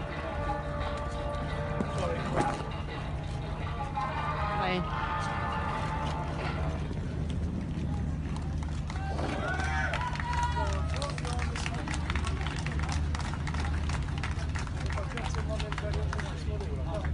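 People's voices talking at the quayside over a steady low engine hum. Many small clicks join in during the second half.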